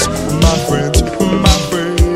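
Instrumental stretch of a 1985 dance record, with no singing: a steady kick drum about twice a second under a held chord that slides slowly downward.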